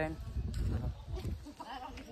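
A faint, wavering bleating animal call near the end, over low rumble and footfalls from walking with the camera.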